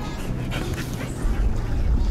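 A dog whining briefly over a steady rush of outdoor noise. About a second in, the noise swells into a loud low rumble.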